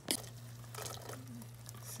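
A spoon working warm water into crumbly cornmeal in a stainless steel bowl: soft, wet squishing, with one light click of the spoon against the bowl at the start.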